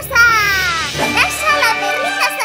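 A high-pitched, child-like voice slides down in pitch for about a second, then chatters in short bursts, over background music.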